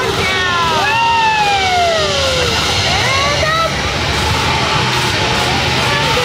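Several people screaming and whooping together, long cries that slide down in pitch over a second or two, over a steady low din of fairground noise.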